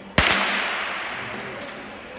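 A starting pistol fires once, a sharp crack with a long echo dying away through the ice rink, signalling the start of a short track speed skating race.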